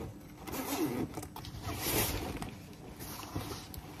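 Fabric backpack zipper pulled shut in two long zips about a second apart, with the rustle of the bag being handled.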